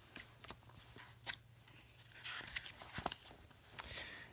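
Paper handling, as of a picture book's page being turned: a faint rustle with a few small clicks scattered through.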